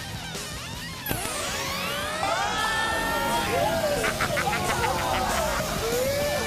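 Electronic sci-fi zap sound effect. A sudden swooping whoosh starts about a second in, followed by a tangle of rising and falling warbling synthesized tones, with a rapid stuttering pulse around four seconds in.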